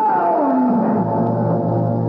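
A loud drawn-out cry sliding down in pitch as the blow falls in a radio-drama stabbing. About a second in, a low steady music drone takes over.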